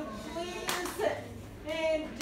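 A single sharp, clap-like sound about three-quarters of a second in, over quiet talking.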